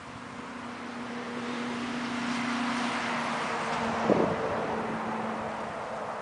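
A motor vehicle passing nearby: its engine hum and tyre noise swell and then fade, the hum dropping slightly in pitch as it goes by. A single thump about four seconds in.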